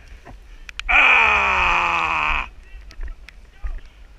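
A long, loud yell from a person, lasting about a second and a half and falling in pitch as it goes.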